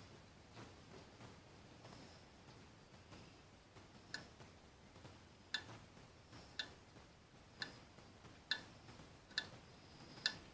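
Faint, light metallic ticks, roughly one a second from about four seconds in, as steel dividers are worked against the rim of a Ford flathead V8's crankshaft pulley to scribe arcs for finding top dead centre; otherwise near silence.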